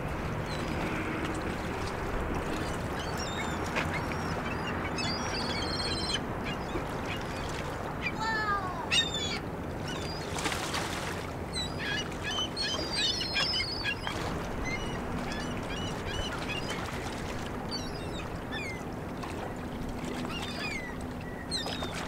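Waterbirds calling on and off over a river, with short calls scattered throughout and a few falling calls about eight to nine seconds in, over a steady background of outdoor noise.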